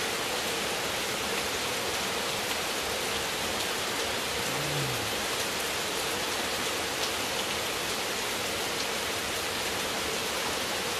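Steady rain falling, an even, unbroken hiss.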